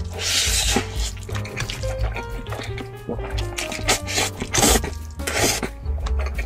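A person slurping noodles off chopsticks: one long slurp near the start and two shorter ones near the end, over background music with a simple stepping melody.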